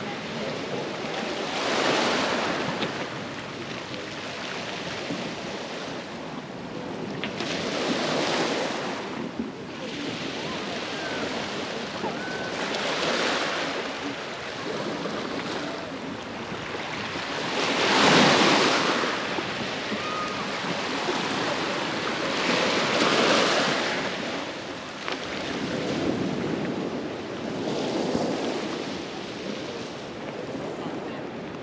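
Small waves breaking and washing up a pebble-and-sand shore, a swell about every five seconds over a steady background hiss.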